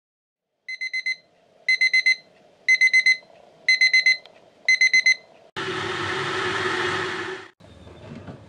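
Small battery alarm clock beeping its alarm: five bursts of rapid high beeps, about one burst a second. The beeping then stops and a loud rush of noise follows for about two seconds before cutting off suddenly.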